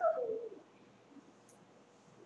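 A short hoot-like vocal sound from a person's voice, sliding down in pitch over about half a second, followed by faint room noise.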